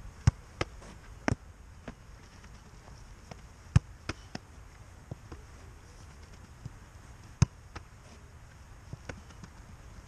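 A football being volleyed and caught in goalkeeper gloves: sharp thuds, mostly in pairs about a third of a second apart, near the start, about four seconds in and about seven seconds in, with fainter taps between and a low outdoor rumble underneath.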